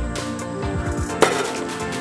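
Background hip-hop-style music with deep falling bass notes. A single sharp knock cuts through about a second and a quarter in.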